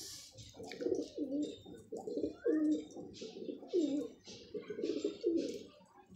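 Domestic pigeons cooing, a run of repeated low, wavering coos with short hissy sounds between them.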